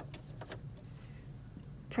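Low steady hum with a few faint light clicks near the start: the presser foot of an Elna 320 sewing machine being raised by hand.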